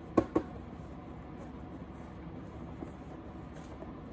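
Cardboard shipping case being handled: two quick knocks from the flaps or box walls, a fraction of a second apart, just after the start, then only faint handling noise as hands reach inside.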